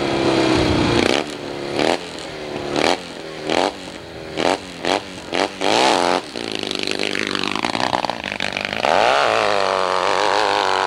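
Hillclimb motorcycle engine revved at the starting line in a series of short throttle blips, then held at high revs as the bike launches. About nine seconds in the engine surges louder and climbs in pitch as the bike goes up the hill.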